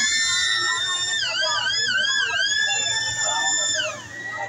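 A long, high-pitched scream held for about four seconds, sliding up at the start, wavering in the middle and breaking off at the end.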